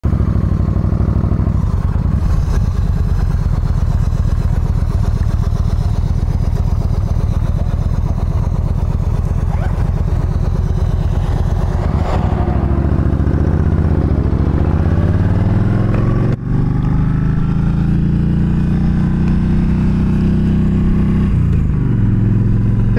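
Yamaha V-Star 1300 V-twin engine running at road speed, heard from the rider's seat with steady wind noise. About halfway through, an oncoming school bus passes. Later the engine pitch dips, there is a brief break, and then the pitch climbs steadily as the bike accelerates.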